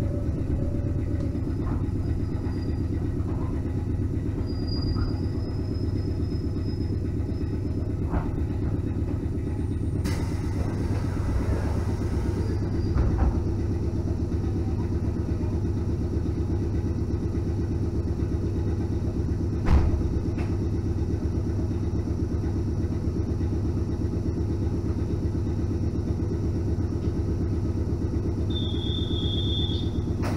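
Electric train standing at a station platform, its onboard equipment humming steadily in the carriage. About ten seconds in a spell of hiss joins the hum, two short knocks come later, and a brief high beep sounds near the end.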